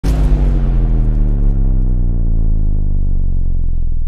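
Intro logo sting: a sudden deep hit at the start that rings on as a low, rumbling held tone, its brightness fading away over about four seconds.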